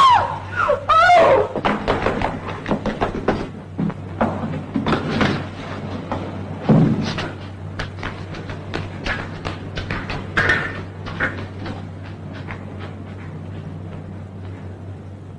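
A woman screams in a high, wavering cry that breaks off about a second in. A string of irregular thumps and knocks follows, over the steady low hum of an old film soundtrack.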